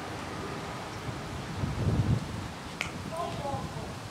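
Wind rumbling on the microphone, loudest about halfway through, then a single sharp crack of a cricket bat striking the ball, followed by brief distant shouts from the players.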